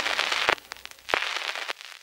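A handful of separate sharp clicks and pops, irregularly spaced, the strongest a little after the middle.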